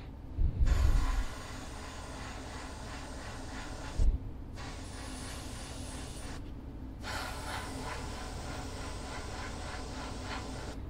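Airbrush spraying paint at turned-up pressure, a steady hiss of air that cuts out briefly three times as the trigger is let off: at the start, about four seconds in, and about six and a half seconds in. Low thumps near the start and about four seconds in are the loudest sounds.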